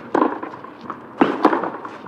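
Tennis ball struck by rackets during a rally: a sharp hit just after the start and another about a second later, with lighter knocks between.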